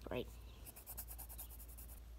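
Graphite pencil scratching on lined notebook paper as a word is written out: a quick run of short, faint strokes.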